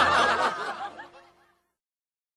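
Several voices laughing and chuckling, fading out over about a second and a half into silence.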